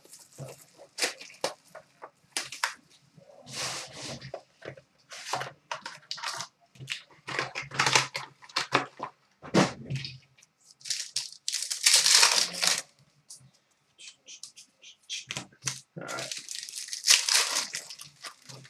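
Plastic and foil wrapping crinkling and tearing in irregular bursts as a sealed trading-card box and its pack are opened, loudest about twelve seconds in and again near the end.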